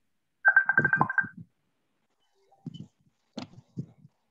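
A short electronic alert tone, like a phone's, pulsing rapidly about eight times in a second, heard over a video call. A few faint clicks and knocks follow near the end.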